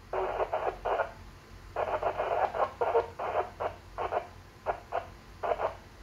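A voice received through an amateur VHF FM transceiver's loudspeaker, thin and narrow-band, coming in short choppy bursts with brief pauses.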